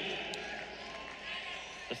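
Steady din of an arena crowd reacting to a takedown in a college wrestling match, with one faint click about a third of a second in.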